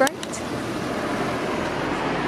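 Steady rush of road traffic going by.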